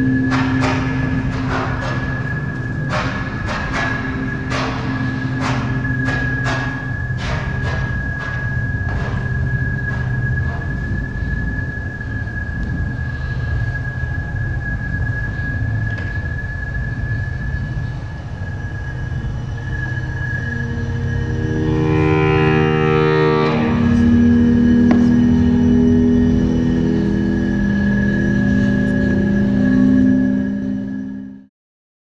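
Experimental electroacoustic music for large saxophone and laptop electronics: a dense low drone with a steady high tone above it, sharp clicks through the first third. About two-thirds through, a flurry of stacked tones gives way to sustained low notes.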